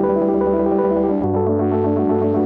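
Elektron Digitone FM synthesizer playing held chords with a bass note, fed through the Elektron Analog Heat MKII. Just past a second in, the chord and bass note change and the treble is cut away, then starts to open up again like a filter sweep.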